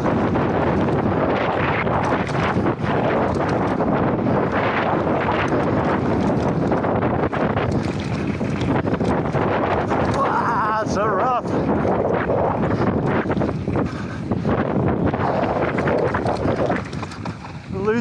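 Wind rushing over a helmet-mounted action camera's microphone as a mountain bike descends a dry, stony dirt trail at speed, with constant tyre roar and rattling knocks from the bike over the rough ground. A brief wavering pitched sound comes about ten seconds in.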